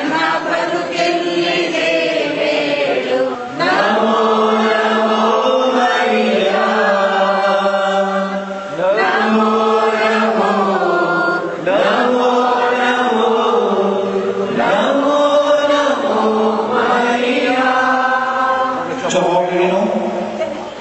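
Voices singing a slow devotional chant in long held notes, phrase after phrase of a few seconds each, each phrase starting with an upward slide in pitch.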